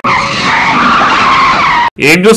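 Tyre screech sound effect of a lorry braking hard, a loud squeal lasting nearly two seconds that cuts off suddenly.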